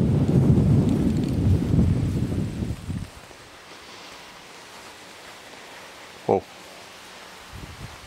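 Wind buffeting the microphone: a loud, uneven low rumble for about three seconds that stops abruptly, leaving a quiet outdoor background with one brief short sound a little after six seconds.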